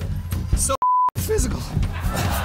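A TV censor bleep: one short, steady single-pitch beep about a second in, with the audio around it cut out, covering a word that has been bleeped out.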